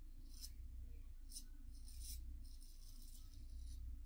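GEM Micromatic single-edge safety razor scraping through lathered stubble on the neck and jaw: a series of short, faint, raspy strokes, several to the second at times.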